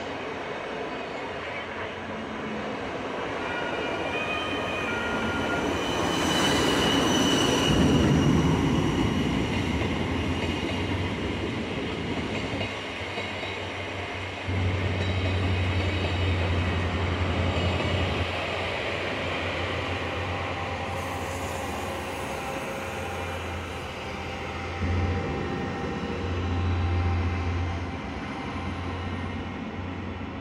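Passenger train coaches rolling along the platform track as the train pulls out, with wheel squeal whining over the rolling noise; loudest about seven seconds in, then fading as the train draws away. A low hum comes and goes in the second half.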